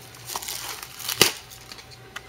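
Packaging of a trading-card box crinkling and crackling as hands handle it, with one sharp crackle just over a second in.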